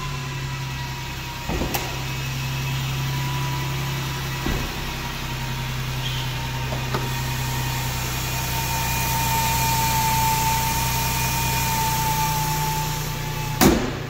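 Ford Transit T350's 3.7-litre V6 idling steadily just after starting, with a thin steady whine over the engine hum. A few light knocks come through the idle, and the hood shuts with a sharp thump near the end.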